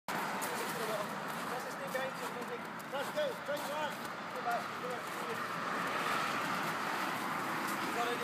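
Steady road traffic noise that swells toward the end, with a string of short, soft pitched sounds in the first half.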